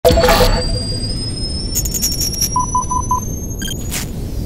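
Intro sting sound design: a heavy impact at the very start, then a low rumble under slowly rising high tones, with a quick glitchy stutter and four short beeps in a row near the middle.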